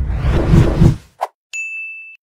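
Sound effects for an animated ad transition. A loud, dense burst heavy in the low end lasts about a second, then comes a short blip. Then a bright ding rings on one steady high tone near the end.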